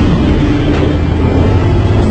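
Film soundtrack: a loud, steady low rumble with faint held tones above it, the underwater ambience of a shark attack scene.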